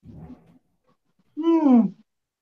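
A woman's appreciative 'mmm' while eating: one loud, drawn-out voiced sound near the end that rises slightly and then falls in pitch, after a faint low murmur at the start.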